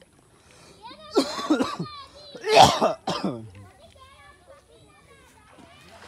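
People's voices, a child's among them, with two loud vocal bursts, like coughs or shouts, about a second and two and a half seconds in, then fainter talk.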